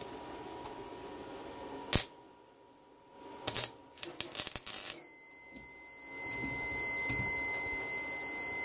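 A small gasless MIG welder's steady hum ends in a sharp click. After a short pause the arc strikes in a couple of short, crackling sputters. Then a continuous high-pitched alarm tone sets in as the 4000 W modified-sine inverter trips out under the welding load.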